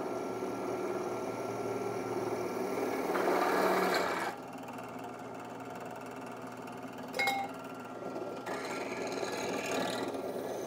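Bench drill press motor running with a steady hum while drilling a hole in a metal tube; about three seconds in the bit bites into the tube, giving a louder cutting noise for about a second. A short click comes about seven seconds in.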